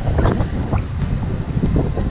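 Wind buffeting the microphone of a handheld action camera: a loud, low, gusty rush that rises and falls unevenly.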